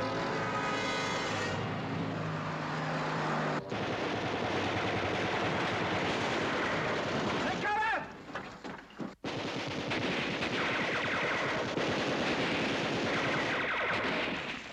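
Machine-gun fire rattling almost without a break, dropping away for about a second around eight seconds in, then resuming.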